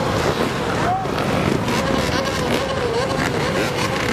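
Many dirt bikes and quad ATVs running together, a wavering engine note with one brief rev about a second in.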